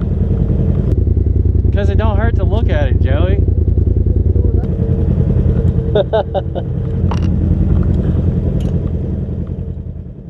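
Side-by-side UTV engine running at low trail speed, a steady low drone heard from inside the cab, with brief voices over it twice. The sound fades out near the end.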